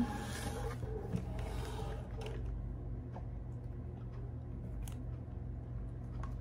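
Faint sipping through looped plastic drinking straws and soft handling of plastic bottles, mostly in the first couple of seconds, over a steady low hum.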